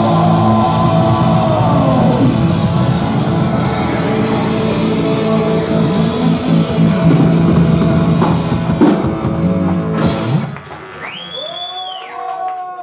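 A live rock band with distorted electric guitars and drum kit playing an instrumental passage, ending about ten seconds in. The audience follows with cheering and a shrill, rising whistle.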